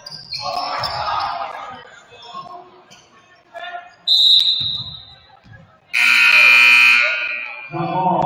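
A referee's whistle blows once, briefly, about four seconds in. About two seconds later the gym's scoreboard buzzer sounds loudly for about a second and a half. Voices are heard at the start.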